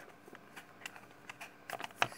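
Faint, scattered light clicks of small pegs being handled and pushed into the holes of a homemade pegboard multiplication grid, several taps at uneven intervals.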